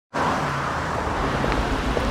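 Steady road traffic noise, a low rumble of cars on the street.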